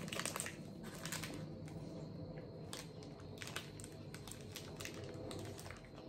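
A plastic snack-bar wrapper crinkling in the hands in short scattered bursts, over a low steady hum.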